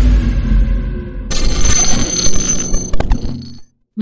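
Intro sound effects: a low boom dying away, then about a second in a bright, high ringing shimmer, with a sharp click near the end as it fades out.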